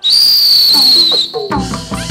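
A loud, shrill whistle held for just over a second, its pitch sagging slightly before it stops. About a second and a half in, the Burmese hsaing ensemble strikes up with drums and percussion.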